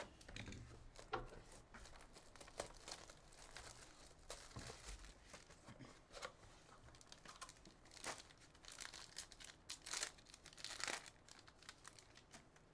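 Faint crinkling and tearing of plastic shrink wrap and a foil trading-card pack being opened, with scattered small rustles and clicks of the cardboard box being handled.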